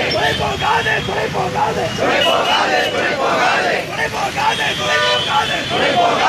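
A crowd of protesters chanting a slogan together, one short phrase repeated over and over in many voices.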